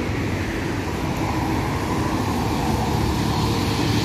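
Road traffic on a multi-lane city boulevard: a steady rumble of passing vehicles, growing slightly louder toward the end.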